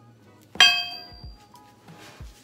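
A pair of 15-pound barbell weight plates clanging once as they are set down, with a brief ringing tail.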